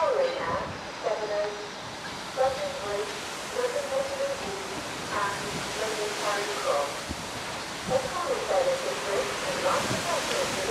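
A person talking indistinctly, heard over a steady hiss.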